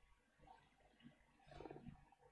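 Near silence, with one faint short sound about one and a half seconds in.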